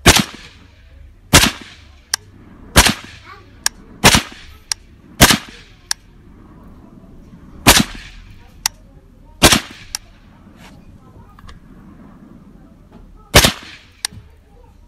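A badly rusted Kalashnikov (AK-47) rifle fired one shot at a time, eight loud cracks spaced one to four seconds apart, with the longest gap near the end. Fainter sharp cracks fall between some of the shots. Despite the rust, the rifle keeps firing and cycling.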